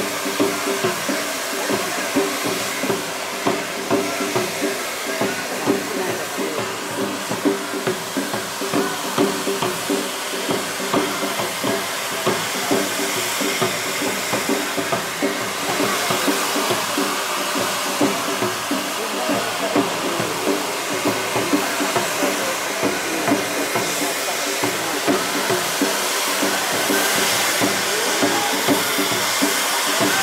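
Tezutsu hand-held bamboo-tube fireworks spraying fountains of sparks, several at once: a continuous loud rushing hiss with dense crackling, over a steady murmur of voices.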